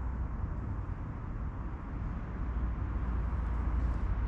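Steady low background rumble with a faint hiss, with no knocks, bangs or voices.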